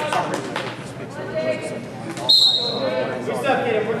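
Referee's whistle blown once, about two and a quarter seconds in: a short, shrill, steady blast that fades out and starts the wrestling bout. Voices in the gym carry on under it.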